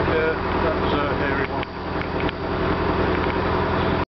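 Narrowboat engine running steadily at cruising speed, a constant low hum, with two light knocks in the second half.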